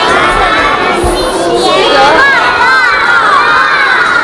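A large group of young children shouting a Spring Festival greeting together in high voices, their many voices overlapping as a chorus.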